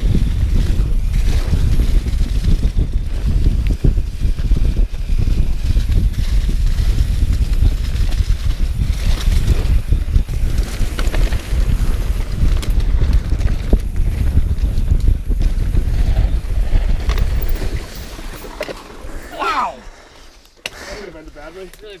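Wind buffeting the microphone and tyres rumbling over a dirt trail as a mountain bike descends at speed, a loud, rough, steady roar. It drops away sharply about eighteen seconds in, and a short burst of voice follows.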